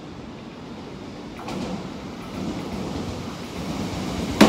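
Odakyu 70000-series GSE Romancecar approaching at speed on the station's passing track: a rumble of wheels on rail that grows steadily louder, swelling further about a second and a half in as the train nears.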